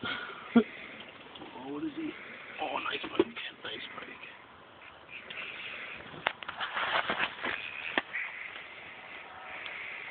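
Indistinct voices with scattered knocks, clicks and rustles of a phone being handled, the clicks bunching between about six and eight seconds in.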